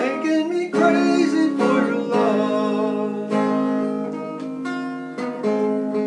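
Acoustic guitar strumming chords, each strum sharp at the start and ringing on, with no words sung.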